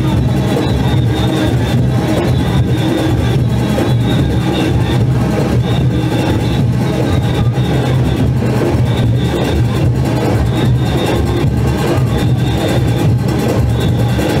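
Live Junkanoo band music played loud and without a break: dense, driving drumming with cowbells and horns over a steady low drone.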